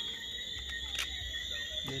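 Night insects keeping up a steady, high, continuous trill, with a single light click about a second in.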